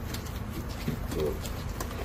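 A man's voice giving a short hesitant filler syllable over steady outdoor background noise, with a few faint sharp clicks.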